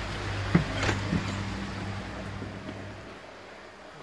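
Charles Austen ET80 linear diaphragm air pump running with a steady low hum that fades away over the last second, with a few sharp knocks in the first second or so.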